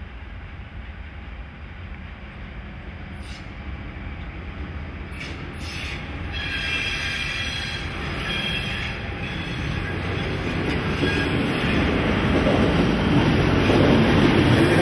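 G 1206 diesel-hydraulic locomotive and its train of sliding-wall freight wagons passing close at low speed, the engine's low drone growing steadily louder. A few sharp knocks come through in the first half, and from about halfway the wheels squeal as the wagons roll by.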